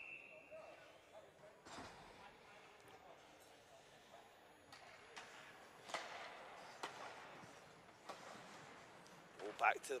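Faint ice-rink play sounds around a faceoff and restart of an ice hockey game: a few sharp knocks of sticks and puck, over a low hiss of skates on ice.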